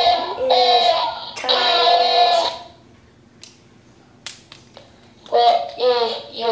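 MiBro robot toy's built-in electronic voice playing robotic vocal sounds for about two and a half seconds, then pausing, with a few faint clicks in the pause, before starting again near the end.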